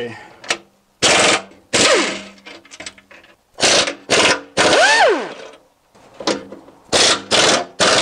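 Pneumatic impact wrench hammering in about seven short trigger bursts, its whine falling away after some of them as the motor spins down. It is working a 16 mm skid plate bolt loose while a hand wrench holds the nut.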